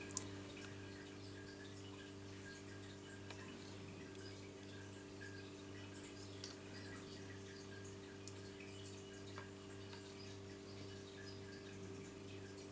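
Faint room tone: a steady low electrical hum with scattered soft ticks, like small drips.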